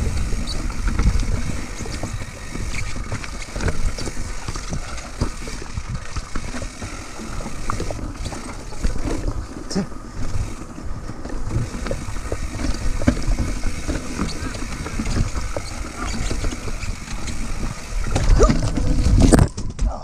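Mountain bike rattling over a rocky trail, with tyres, chain and suspension knocking on the rocks. Near the end comes a louder burst of impacts as the bike crashes on slick rocks, then the noise cuts off suddenly.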